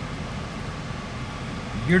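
Steady rush of a car's climate-control fan blowing strongly in the cabin of a 2015 Buick LaCrosse.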